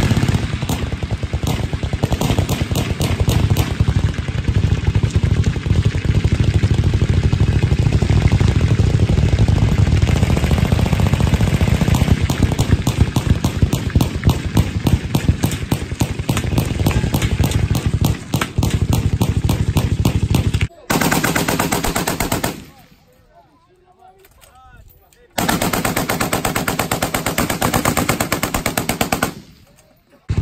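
Many machine guns firing full-auto at once, a dense, continuous rattle of overlapping shots. About two-thirds of the way through the firing breaks off and drops away for about three seconds, then resumes until it stops again just before the end.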